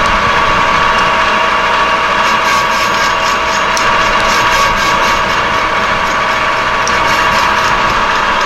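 Metal lathe running with a steady whine from its motor and gearing while an insert tool takes a facing cut across a scrapped steel transmission gear; a faint high crackle joins about two seconds in.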